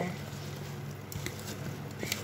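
A bare hand mixing chopped raw mango pieces coated in spices and jaggery in a steel bowl: faint, soft squishing and rustling, with a few small clicks about a second in.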